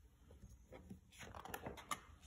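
Faint rustling and light clicks of a picture book's paper page being handled and turned, mostly from about a second in.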